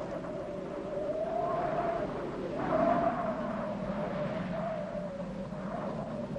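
Howling wind: a continuous moaning tone that wavers slowly in pitch, swelling briefly about three seconds in.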